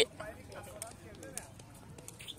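Faint voices of players calling out across a futsal game, with several short sharp knocks of the ball being kicked and bouncing on the concrete court.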